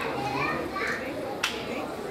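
Faint background voices from the audience in a pause of the amplified speech, with one sharp click about one and a half seconds in.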